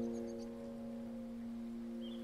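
Digital piano playing a soft held chord that fades slowly, with no new notes struck.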